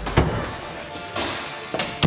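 An interior closet door's knob latch clicks as the door is opened, followed by a rush of noise about a second in and a second knock near the end, with music underneath.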